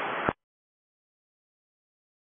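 Silence: a pilot's radio transmission cuts off about a third of a second in, leaving dead air with no sound at all.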